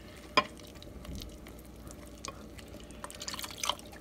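Silicone whisk stirring a wet flour-and-water batter in a glass bowl, a faint sloshing, with one sharp click about half a second in and a few small ticks later.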